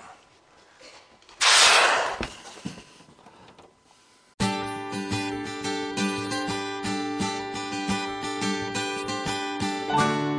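A brief loud rush of scraping noise about a second and a half in, as the rooftop air conditioner is pushed across the roof; then acoustic guitar music starts abruptly a little past four seconds in and plays steadily to the end.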